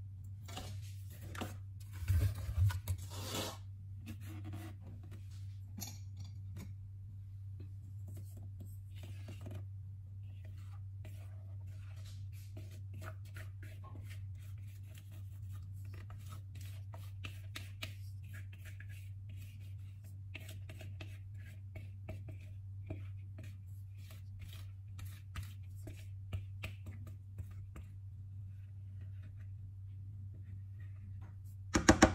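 Silicone spatula scraping chocolate cake batter out of a glass mixing bowl into a springform pan: soft scrapes and small clicks throughout, with a louder burst of scraping and knocking about two seconds in. A steady low hum runs underneath.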